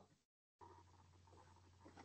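Near silence: faint line hiss with a low steady hum from an open video-call connection, dropping out completely for a moment about half a second in.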